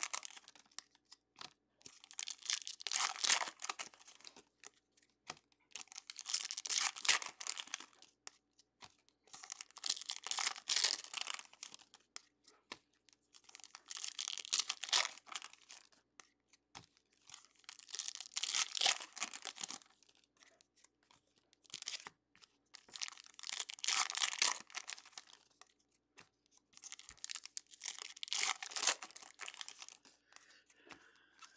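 Foil trading-card pack wrappers crinkling and tearing, and glossy chrome cards being slid and thumbed through in the hands. It comes in repeated bursts of about two seconds, roughly every four seconds, with short quiet gaps between.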